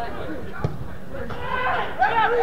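Players' voices calling out across a football pitch during open play, with one short thud of a kicked football a little over half a second in.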